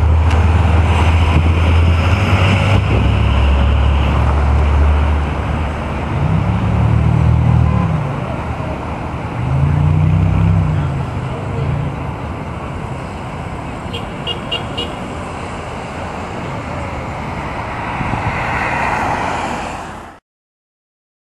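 Road traffic passing on a street: a heavy low rumble, then two vehicles swelling up and fading away one after the other. A quick run of four short high beeps sounds about two-thirds of the way through.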